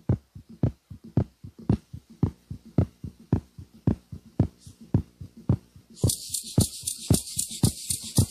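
Band music: a steady low drum beat, strong thumps about twice a second with softer ones between. About six seconds in, a fast, high rattling rhythm joins it.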